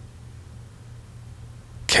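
A low steady hum with little else over it, then a voice says a loud, short 'okay' near the end.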